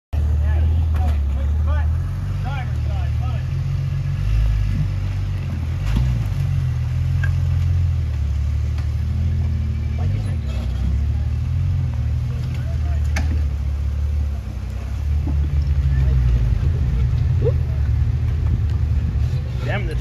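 Rock crawler buggy's engine working at low speed as it crawls over boulders, a deep steady rumble that gets louder about three-quarters of the way through.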